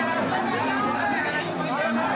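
Crowd chatter: several people talking over one another at once, with no single voice standing out.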